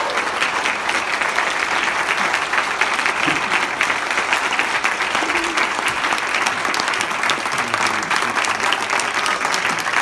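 Audience applauding: dense, steady clapping from a room full of people that keeps going without a break.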